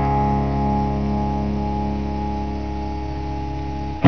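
A guitar chord struck once and left to ring, fading slowly as it sustains, in a performance of a song.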